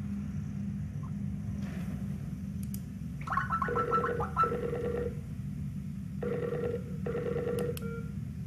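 Skype video-call ringtone ringing twice, each ring a short two-part tone pattern, with a pause of about a second between rings: a video call is being placed.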